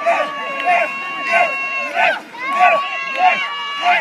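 A tug-of-war team shouting a rhythmic pulling chant, about one shout every two-thirds of a second, with a long steady note held over the chant twice.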